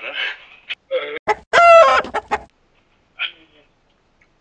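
A loud, high-pitched laughing squeal from a person, one held cry of about half a second. Short clicks come before it and brief bits of voice after it.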